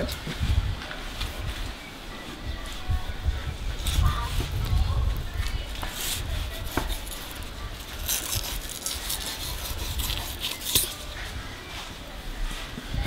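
A small whiting knife slicing and scraping through a gummy shark's belly flap against a plastic cutting board, in short scraping strokes with a few clicks, over a low rumble.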